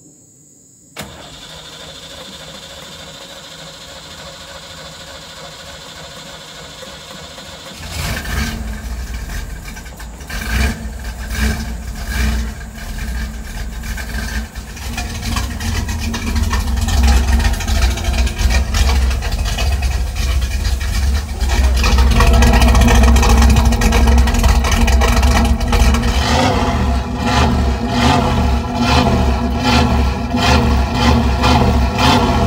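Chevrolet Camaro Z28's V8 engine being started: a click and several seconds of steady cranking, then the engine catches about eight seconds in. It runs unevenly at first and is then revved, getting louder and peaking about two thirds of the way through.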